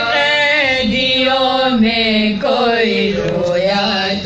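Women's voices chanting a noha, an Urdu mourning lament, in a slow, drawn-out melody that holds and bends long notes.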